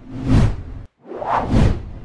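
Two whoosh transition sound effects, one after the other. Each swells up and fades away, and the first cuts off abruptly just under a second in.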